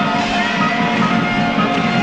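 Live rock band playing loudly, led by an electric guitar with long held notes that bend up and down over bass and drums.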